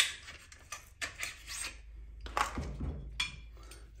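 Metal parts of a Smith & Wesson Response carbine being handled as its bolt is drawn out of the opened receiver: scattered light clicks, with brief scrapes about a second in and again a little past two seconds.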